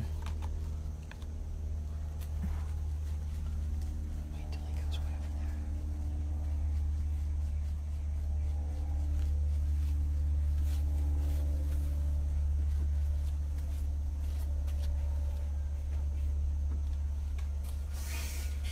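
A steady low rumble with a faint, even hum over it, and no clear words.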